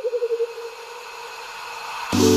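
Editing transition sound effect: a hiss that swells steadily, with a wavering tone that comes in abruptly and fades out over about a second and a half.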